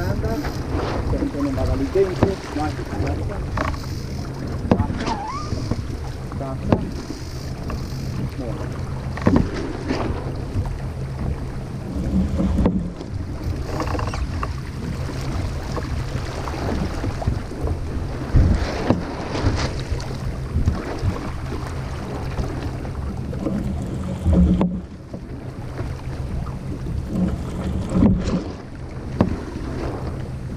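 Sailboat under spinnaker moving through the water: steady wind and water noise, with frequent short knocks and thumps from the deck and rigging.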